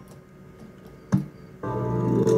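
IGT video slot machine starting a new spin: a sharp click about a second in, then the machine's reel-spin music starts with loud sustained electronic organ-like chords.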